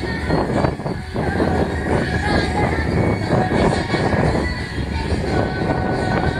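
Strong wind buffeting the microphone, a loud, steady rumbling rush that swamps a live acoustic guitar and voice heard faintly through the PA.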